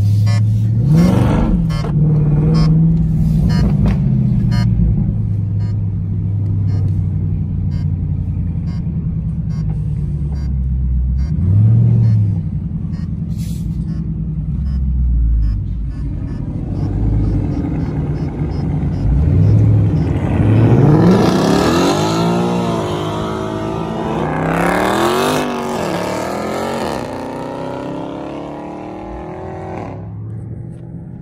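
Car engine heard from inside the cabin, idling and blipping at low speed, then accelerating hard with two long climbs in pitch about two-thirds of the way in.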